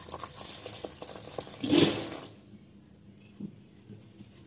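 Milk poured in a stream into a plastic bowl of thick mayonnaise-and-cream dressing: a pouring, splashing sound that swells just before it stops about two seconds in.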